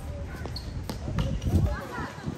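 Basketball bouncing on a hard outdoor court, a few sharp knocks with the loudest about one and a half seconds in, amid players' voices.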